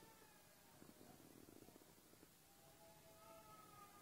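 Near silence: faint room tone, with a few faint thin held tones in the second half.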